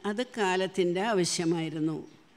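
Speech only: an elderly woman talking steadily into a lectern microphone.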